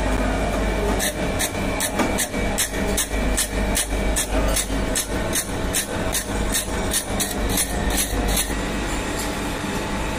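Surface grinder running with a steady hum as its thin abrasive wheel slits a steel collet, with a rapid, regular gritty ticking about three times a second through most of the cut that stops shortly before the end.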